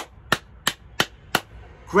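Five hand claps in a steady rhythm, about three a second.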